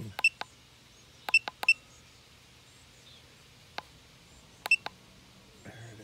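Short, high electronic beeps from a KONNWEI KW208 battery tester, one for each press of its arrow button as the cold-cranking-amp rating is stepped down. Two come at the start, three about a second and a half in, one near four seconds and two close together near five.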